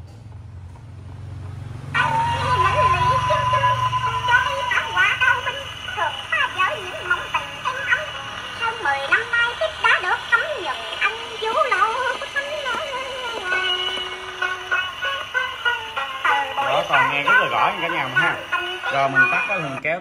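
Columbia portable wind-up gramophone playing a record: a singing voice with instrumental accompaniment, thin and narrow in range as on an acoustic gramophone, starting about two seconds in after a low hum as the needle settles into the groove.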